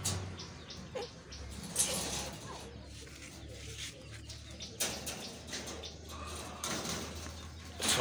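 Bird calls in the background over a steady low hum, with a few short clicks and rattles from the wire-mesh rabbit cage as it is handled.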